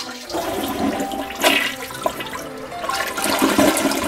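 Toilet flushing: a loud rush of water that swells about a second and a half in and again near the end.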